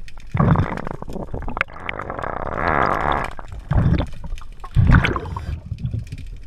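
Scuba diver's regulator heard underwater: bursts of exhaled bubbles rumbling and gurgling about half a second in and again near four and five seconds, with a longer hissing breath in between.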